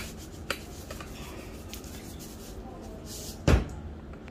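Quiet kitchen handling noise with a few faint clicks, then one loud dull thump about three and a half seconds in.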